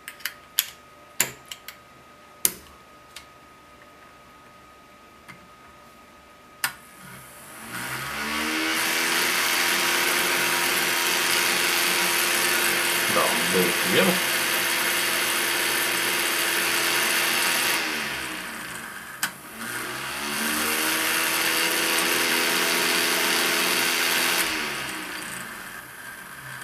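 A few sharp plastic clicks as the kit's snap-together parts are pressed into place. Then a small toy DC motor with a plastic propeller spins up to a steady whine, runs about ten seconds and winds down. It runs again for about four seconds. The motor is wired in reverse polarity, so the propeller stays on and runs as a fan instead of lifting off.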